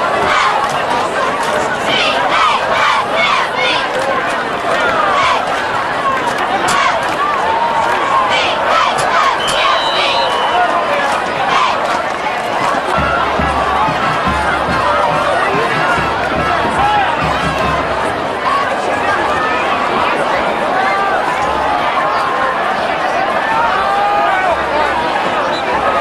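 Football spectators in the stands, many voices talking and calling out over one another in a steady crowd babble. A brief high tone comes about ten seconds in, and low rumbling on the microphone starts about halfway through.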